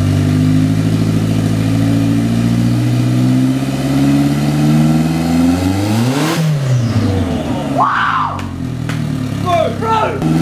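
Nissan Bluebird's engine, freshly turbocharged, running and being revved by hand from the engine bay: the engine speed climbs to a peak about six seconds in, then drops back. It breathes out through an open, upward-facing dump pipe with no exhaust fitted.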